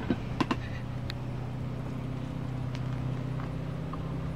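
Small boat outboard motor idling with a steady low hum, with a few sharp knocks about half a second and a second in.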